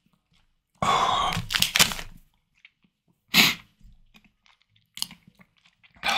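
A man coughing hard: a long rasping cough about a second in, a sharp single cough a couple of seconds later, and another cough as he reaches for water near the end.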